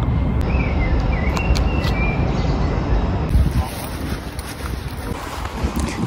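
Wind buffeting the microphone, heard as a low rumbling hiss that eases about three and a half seconds in.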